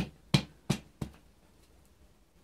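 Four sharp knocks in about a second, the second the loudest, as a metal piston ring compressor is knocked down onto the engine block deck around a cylinder bore to seat it flush.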